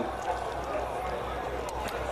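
A pause in the talking: a faint murmur of voices over a low steady electrical hum.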